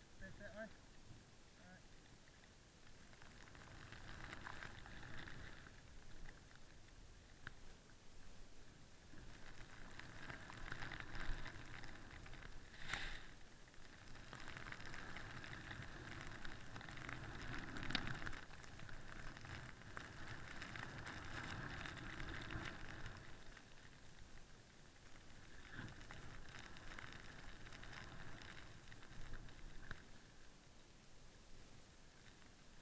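Snowboard riding through deep powder snow: a faint, rushing hiss of the board through the snow that swells and fades in long waves as the rider turns, with two sharp knocks in the middle.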